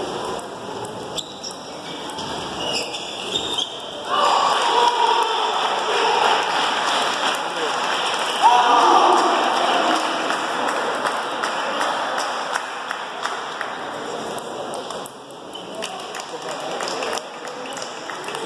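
Table tennis ball clicking off the paddles and the table during a doubles rally, with people talking in the background.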